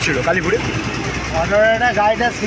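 A man's voice speaking in short phrases over a steady low rumble of road traffic with an engine idling nearby.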